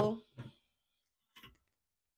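A woman's voice trails off right at the start, then near silence broken by one short, faint click about one and a half seconds in.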